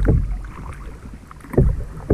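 Water sloshing and splashing around a sea kayak's hull as it is paddled, with wind rumbling on the action-camera microphone. It dies down in the middle and picks up again about a second and a half in.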